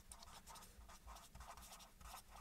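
Faint scratching of a felt-tip marker writing on paper, a quick run of short, irregular strokes.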